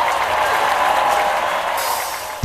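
Audience applause, a steady wash of clapping that fades out just before acoustic guitar strumming begins.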